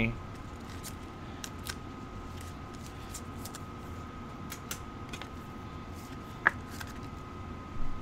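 Trading cards and pack wrappers being handled quietly: a few scattered soft clicks and rustles over a faint steady hum.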